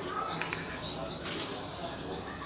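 Small birds chirping: several short, high, rising chirps.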